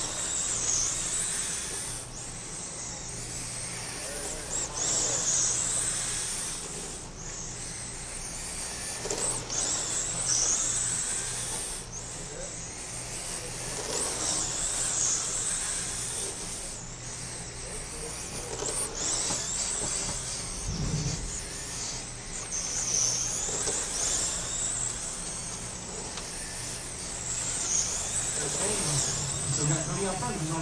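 Radio-controlled late model race cars lapping a small paved oval, their motors whining high, rising and falling in pitch every few seconds as the cars speed down the straights and slow for the turns.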